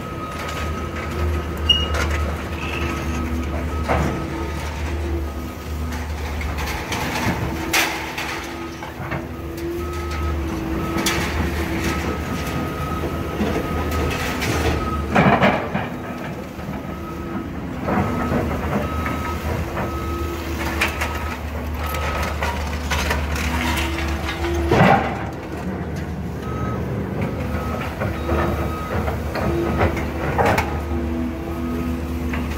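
Demolition excavator at work: its diesel engine runs steadily, and its hydraulics whine on and off. Crashes of building material being torn away and falling come several times, loudest about 15 and 25 seconds in.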